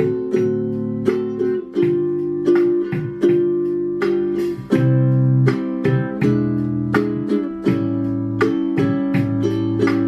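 Ukulele strummed in a steady rhythm, several strokes a second, working through a repeating chord progression with the chord changing every second or so.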